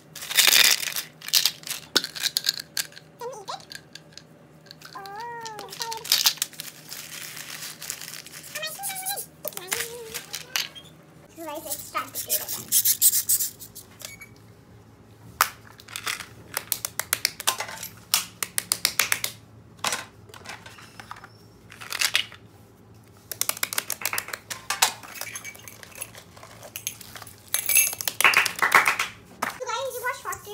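Small clear plastic bag crinkling and rustling as it is handled, in many short, sharp crackles, with a few brief voice sounds in between.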